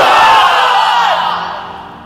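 Voices holding a long, drawn-out chanted note at the close of a recitation of the names of God, fading away over about two seconds.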